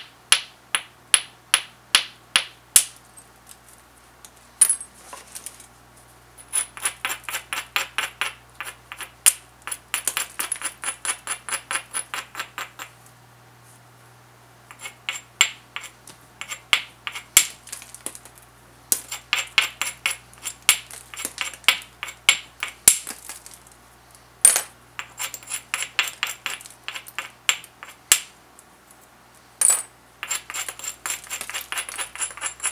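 A small hand-held stone working the edge of an obsidian biface in quick, light strokes: runs of fast, scratchy clicks, several a second, broken by short pauses. This is the grinding and tapping that prepares the edge for flaking. Two sharper single knocks stand out, one a few seconds before the end and one right at the end.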